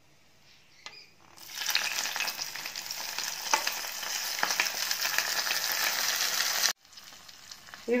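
Hot coconut-oil tempering of mustard seeds, dried red chillies and curry leaves poured from an iron kadai into a curd-and-coconut pineapple pachadi, sizzling and crackling as it hits the curry. The sizzle starts about a second and a half in and cuts off suddenly near the end.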